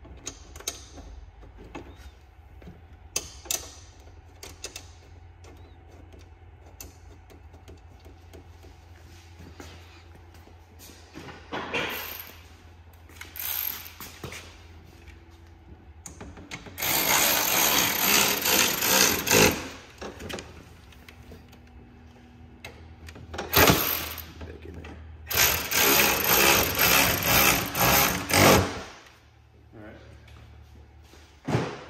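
Hand-held power drill running in bursts as the snowmobile's rear bumper is fastened back onto the tunnel: several short runs, then two longer ones of about two and three seconds.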